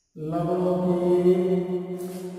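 A person's voice holding one long steady note at an unchanging pitch. It starts suddenly just after the beginning and slowly fades.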